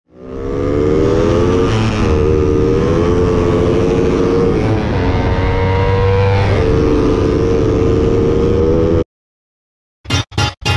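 Suzuki Raider 150 motorcycle's single-cylinder four-stroke engine running hard at high revs under way, its pitch dipping and recovering a few times. The sound cuts off suddenly about nine seconds in.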